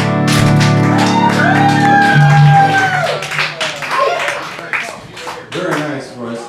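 Acoustic guitar and fiddle ending a country song on a held final chord, then the audience clapping and cheering.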